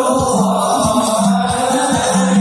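Sholawat: a group of voices chanting devotional Islamic praise of the Prophet over frame drums beating a steady rhythm, with a held low note beneath.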